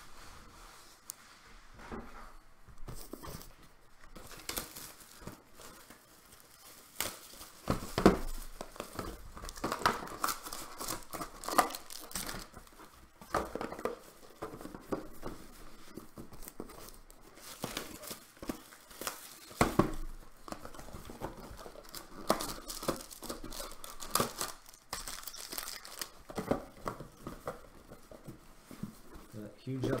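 Trading-card packaging being handled and opened: irregular crinkling and tearing of foil pack wrappers and box wrap.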